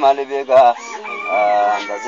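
Voices chanting an Ethiopian Islamic menzuma: a few short sung syllables, then a long held high call about a second in.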